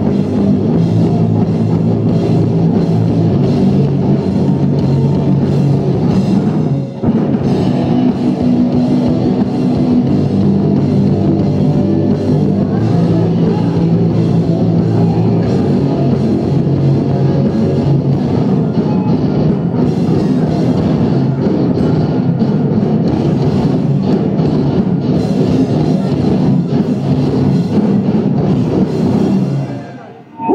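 Live rock band playing loudly: drum kit, distorted electric guitars and bass, with a sudden brief stop about seven seconds in before the full band comes back. The music drops away right at the end as the song finishes.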